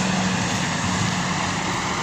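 Steady engine drone: a continuous low hum under a broad, even noise, unchanging through the pause.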